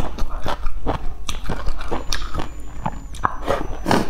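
Close-up mouth sounds of eating noodles: a run of wet chewing clicks and lip smacks, then a louder slurp near the end as more noodles are drawn in.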